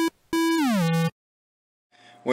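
Synthesised electronic sound effect of a subscribe-button animation: a short blip, then a longer tone that holds and slides down in pitch, ending about halfway through.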